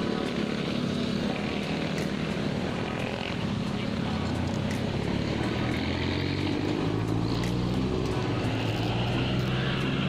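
Road traffic passing: motorcycles and vehicles going by, with a box truck's engine drone growing louder in the second half as it passes close.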